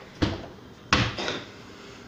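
Two sharp knocks about two-thirds of a second apart, the second a little louder and followed by a brief ringing.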